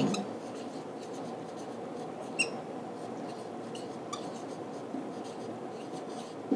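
Faint writing sounds, a pen or marker moving on a surface with a few light taps, over steady room hiss.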